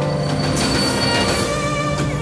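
Passenger train braking at a platform: a high wheel-and-brake squeal with a hiss, from about half a second in, lasting about a second, over soft sustained string music.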